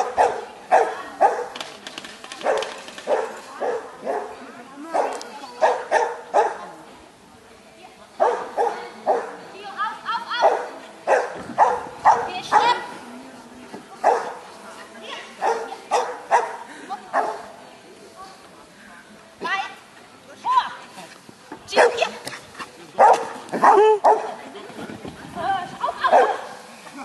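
A dog barking repeatedly as it runs, in quick clusters of short barks with a few brief pauses.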